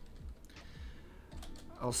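Typing on a computer keyboard: a few separate keystrokes.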